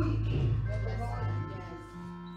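Church music: sustained keyboard chords, a low held bass note fading out about halfway through as higher held notes come in. A woman's singing voice trails off at the start.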